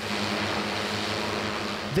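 Six-rotor drone in flight, its propellers giving a steady buzzing hum over a rushing hiss that starts suddenly.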